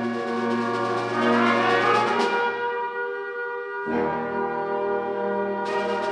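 Concert band playing sustained chords, led by brass. Partway through the sound thins to a softer held chord, then the lower parts come back in about four seconds in and the sound brightens near the end.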